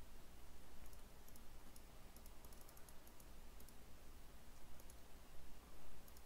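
Faint, scattered light clicks of someone working at a computer, with a quick cluster of them in the middle, over a low steady hum.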